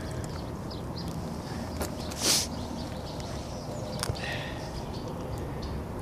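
A single short scuff of a shoe on gritty asphalt roof shingles about two seconds in, with a few faint ticks, over a steady low rumble.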